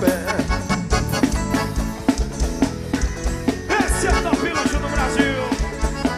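Forró band playing an instrumental passage between sung verses: a fast, steady beat with a lead melody line in the middle.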